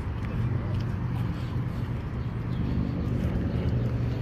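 Urban outdoor background: a steady low hum under a wash of street noise, with faint voices.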